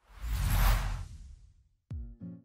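Whoosh sound effect of an animated logo intro, swelling over the first half-second and fading away over about a second. Near the end, a short tone falls steeply in pitch.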